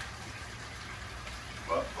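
Steady low hum and hiss of room background noise, with a man's short 'oh' near the end.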